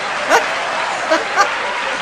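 Studio audience laughing in a steady roar, broken by three short, high-pitched yelps of laughter.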